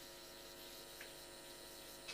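Near silence: steady faint electrical hum of room tone, with one faint tick about a second in.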